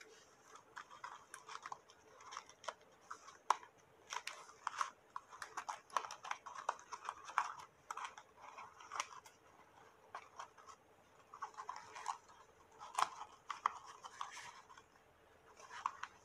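Hands handling a cardstock paper box: irregular rustling, scraping and light tapping of card against card as the box is held and closed up.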